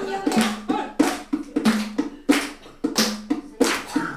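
Hand clapping in a steady rhythm, about three claps a second, with voices singing short held notes between the claps.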